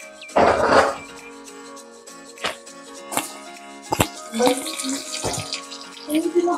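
Background music, with a loud crinkle of a thin plastic bag about half a second in as it is pulled off a block of rice noodles, followed by a few sharp clicks and a brief hiss near the end.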